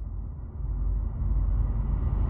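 A title-card transition sound effect: a deep rumbling swell that grows steadily louder and brighter as hiss rises over the low rumble.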